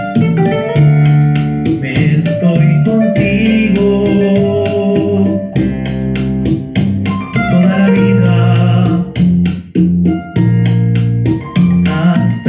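Instrumental bolero passage: a nylon-string classical guitar plucking over sustained organ-like keyboard chords and a bass line, with a steady beat of light percussion ticks.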